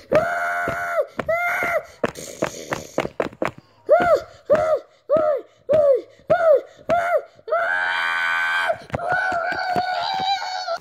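A child's voice making pretend fight noises: a held cry at the start, a run of short yells about two-thirds of a second apart, and a long scream near the end, with scattered bumps in between.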